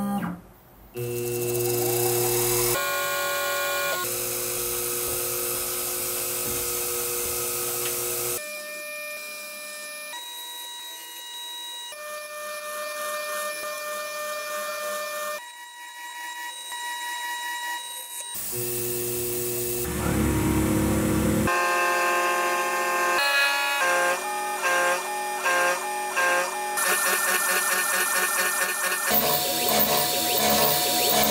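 Small CNC milling machine's spindle and end mill cutting an aluminium block, heard as a string of short clips: each a steady whine at its own pitch, changing abruptly every few seconds, with a rapid pulsing pattern near the end.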